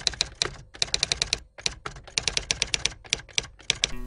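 Typewriter keys clacking in quick, irregular runs of strikes: a typewriter sound effect for title text being typed out letter by letter.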